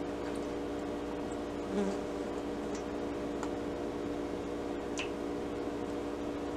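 A steady electrical buzzing hum from a running appliance, with a few faint clicks over it.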